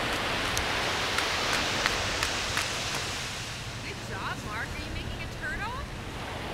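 Steady rush of ocean surf and wind on the microphone, with a series of small sharp clicks from a plastic toy shovel scraping in the sand over the first few seconds. Near the end come a few short, high rising chirps.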